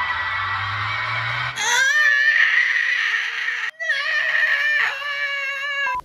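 TV show audio of an audience cheering and screaming, with music, played through a television. There is a brief dropout near the middle, and the sound cuts off suddenly at the end.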